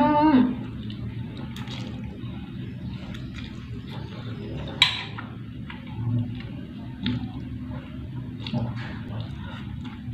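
Spaghetti being slurped and chewed, with wet mouth sounds, a steady low hum underneath and a sharp click about five seconds in.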